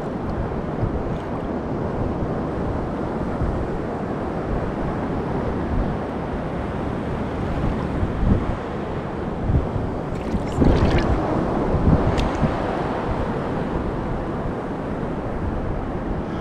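Steady wind buffeting the microphone over the wash of ocean surf at a rock-pool shoreline, with a few brief louder moments about ten to twelve seconds in.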